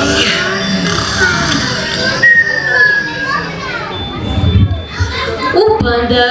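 Many children's voices chattering and calling out in a large hall, with one high drawn-out call a little after two seconds. Soft music fades out at the start.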